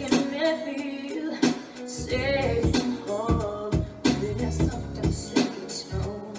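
R&B-influenced pop song playing, a woman singing lead over a drum beat and bass.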